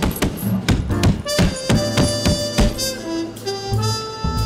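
Background music: a run of quick, sharp beats, then held notes that change pitch every second or so.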